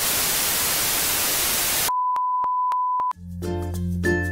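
Television static hiss for about two seconds, cut off suddenly by a steady high beep tone lasting about a second. Intro music with a steady bass line starts near the end.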